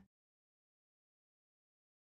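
Digital silence.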